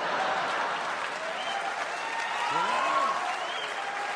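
Live audience applauding, with a few voices calling out over the clapping around the middle.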